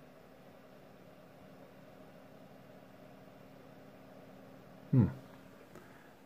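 Faint steady hum of a freshly powered-on AT computer's power supply fan and CPU cooler fan running. No POST beep comes from the PC speaker.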